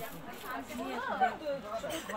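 Background chatter: people talking indistinctly, fairly quiet.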